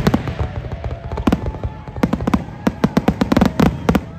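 Aerial fireworks bursting: an irregular run of sharp bangs and crackles over a low rumble, coming thickest near the end.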